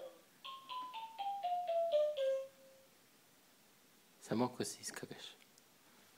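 Baby's electronic activity table toy playing a quick descending run of about nine chime-like notes over two seconds, each note starting with a light click. A short burst of voice follows about four seconds in.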